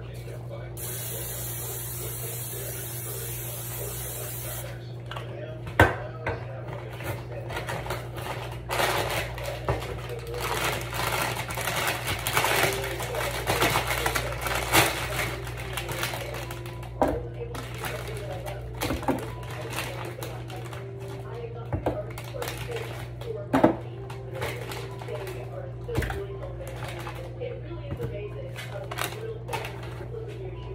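Aerosol cooking spray hissing for about three and a half seconds as a baking pan is greased, followed by scattered clatter and sharp knocks of kitchen handling, over a steady low hum.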